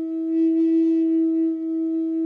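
Native American flute holding one long, steady low note.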